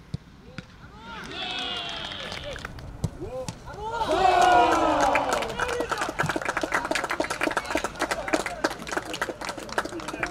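A single sharp kick of a football near the start, then players' voices shouting on an open pitch, growing louder about four seconds in, with many quick claps through the second half.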